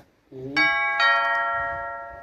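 A two-note chime, doorbell-style ding-dong: two strikes about half a second apart, the second higher, ringing on and slowly fading. A brief voice sound comes just before it.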